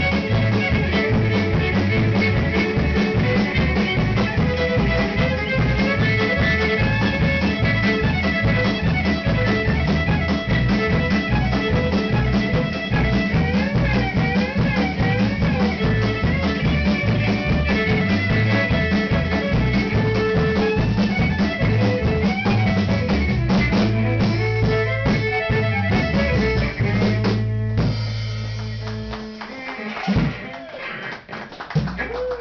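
Live band of fiddle, electric guitar and drum kit playing a fast tune to a steady drum beat. Near the end the tune closes on a held chord that fades away.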